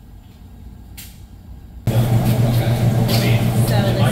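Faint room tone, then about two seconds in a loud, steady low mechanical hum starts abruptly and holds.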